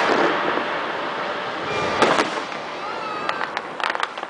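Fireworks show going off: a dense rumble of bursts that eases off, two sharp bangs about two seconds in, then a quick run of sharp cracks from aerial shells near the end.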